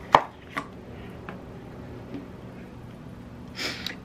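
A knife clicking against a plastic tub while scooping whipped cream cheese: one sharp click just after the start and a softer one about half a second later, then quiet room tone.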